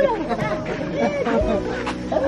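A group of people talking over one another in excited chatter, several voices at once with no single clear speaker.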